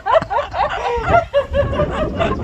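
Women laughing and giggling, with short excited vocal exclamations.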